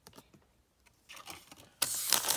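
Pokémon trading cards being handled by hand: a few light taps and soft rustles, then a louder sliding rustle near the end as the cards are shuffled.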